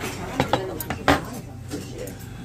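Chopsticks and tableware clinking against stainless-steel side-dish bowls as food is picked up: a few sharp clinks, the loudest about a second in.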